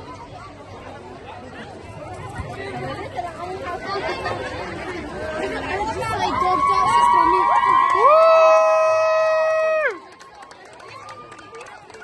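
Crowd chatter, then from about six seconds several women's high, held ululating cries rise over it and grow louder from about eight seconds, all cutting off at once shortly before the end.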